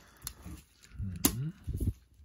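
Clear acrylic panels of a display stand clicking together as a tab is pushed into its slot: a faint tap early on, then one sharp click a little past the middle. A short murmured vocal sound comes with it.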